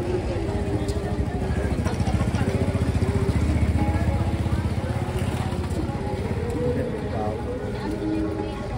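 A motorcycle engine running as it passes close by, rising to its loudest about three to four seconds in and then fading, with people's voices around it.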